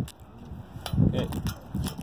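A few sharp metal clicks, about a second apart, as a ratchet and a 5/8-inch wrench are worked onto the steel tension head of a mobile home tie-down strap to hold the strap's tension.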